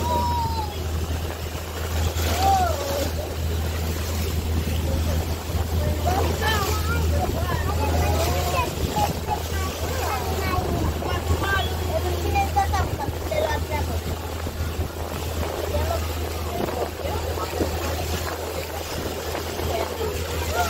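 A motorboat running at speed: a steady low rumble under the rush of its foaming wake, with people's voices heard over it throughout.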